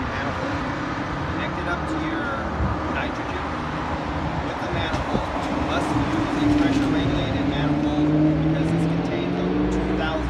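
Vehicle engine and traffic noise, a low hum growing stronger in the second half.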